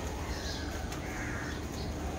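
Birds calling a few times, harsh caw-like calls, over a steady low rumble.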